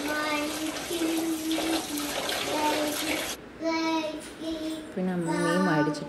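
Kitchen tap running into a steel plate in a stainless-steel sink while hands wash in it; the water stops about three seconds in. A voice sings held notes over it throughout, louder near the end.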